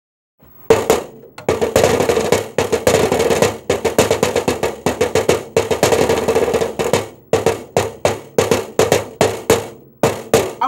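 Drumsticks beating a fast rhythm on a hollow object, each stroke ringing at the same pitch; the strikes come thick and fast at first, then space out into single hits about three a second near the end.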